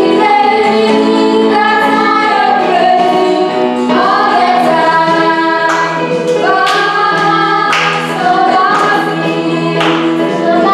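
A woman and children singing a gospel song to Yamaha electronic keyboard accompaniment, with sharp hand claps about once a second in the second half.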